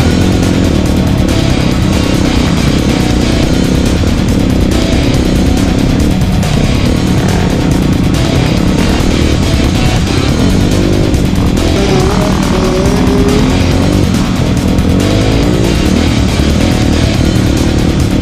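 Dirt bike engine revving up and down under load, mixed with loud hard-rock music.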